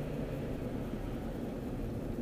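Car interior noise while driving: a steady low rumble of road and engine noise heard inside the cabin.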